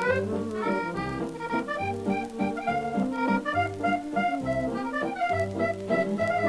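A 1940s musette dance orchestra plays an instrumental passage, with the accordion carrying the melody over a regularly repeating bass line.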